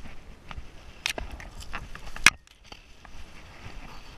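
Footsteps through dry scrub, with dry brush and twigs crackling underfoot. A few sharp cracks stand out, the loudest a little past two seconds in.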